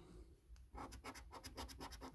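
A coin scraping the scratch-off coating on a paper scratch card: a quick run of faint short scrapes, coming thickest from a little over half a second in.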